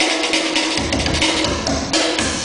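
Live percussion on a set of drums: a fast run of strokes over a steady held tone, with deep bass drum strokes joining about a second in.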